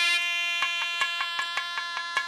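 Carnatic-style devotional music: a wind instrument holds one long, steady note over sharp drum strokes coming a few times a second.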